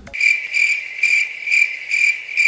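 Cricket chirping sound effect: about five evenly spaced, high-pitched chirps, roughly two a second. It is the comic 'crickets' cue for an awkward silence.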